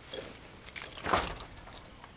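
Rustling and clattering handling noise from a person moving close in front of the camera, with a brief metallic jingle, loudest about a second in.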